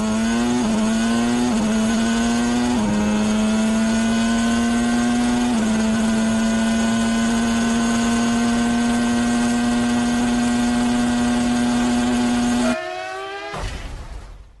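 Onboard recording of a Williams FW16 Formula 1 car's Renault V10 at full throttle. The note climbs through quick upshifts in the first few seconds, then holds one steady high pitch. Near the end it drops away abruptly and the sound cuts out.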